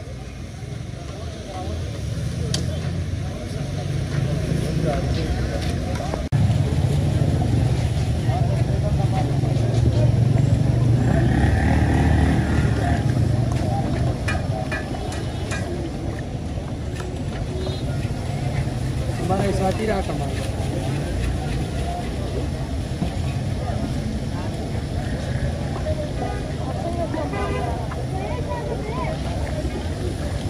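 Roadside street noise: a low rumble of vehicle engines and traffic, loudest in the middle, with people's voices talking over it at times.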